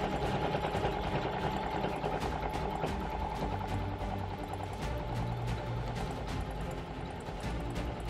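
Singer Heavy Duty 4452 sewing machine stitching through four layers of denim: a fast, even run of needle strokes that goes on steadily throughout. Background music plays underneath.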